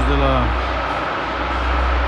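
Steady low machinery drone inside a tunnel under construction, with a faint steady whine above it. A man's voice speaks briefly at the start.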